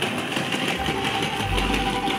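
Wheels of a hard-shell suitcase rolling over a tiled floor: a continuous rattle, with a deeper rumble joining about halfway through.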